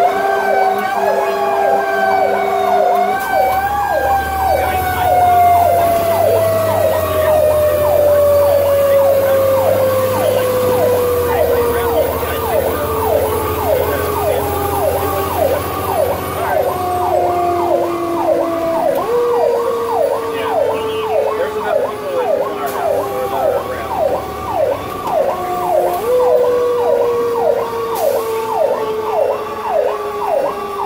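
Fire truck sirens heard from inside the cab: a fast yelping siren cycling about three times a second, over the slow wail of a Federal Q mechanical siren that winds down in pitch and is brought back up twice, about two thirds of the way through and again near the end. A low engine hum runs underneath.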